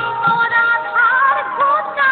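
Bengali kirtan music: a sliding, ornamented melody with a few khol drum strokes underneath.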